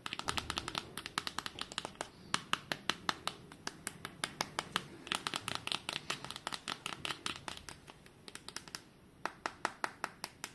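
Fingertips tapping on the back panel of a POCO X5 Pro smartphone: quick, uneven light taps, several a second, with a short lull about eight seconds in.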